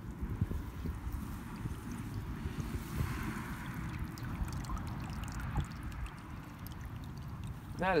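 Shallow stream water running and splashing around a dip net as it is lifted out and handled, over a low, uneven rumble of wind on the microphone.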